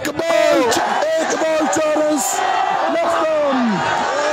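A man's voice speaking loudly and continuously, with crowd noise behind it.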